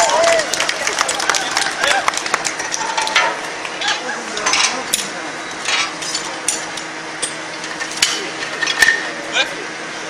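Irregular metal clanks, knocks and clinks of tools and steel parts on a 1951 Jeep's chassis as it is worked on by hand, with crowd voices underneath.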